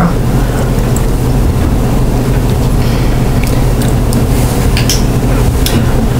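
Room tone: a steady low hum with an even hiss, broken by a few faint clicks.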